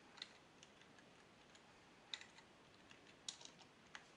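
A few separate, quiet keystrokes on a computer keyboard, spaced out irregularly, with a small cluster of quick taps a little after three seconds in.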